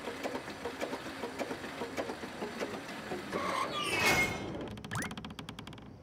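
Cartoon sound effects: scattered light ticks, sliding tones around the middle with a short rising glide, then a fast, even run of clicks near the end.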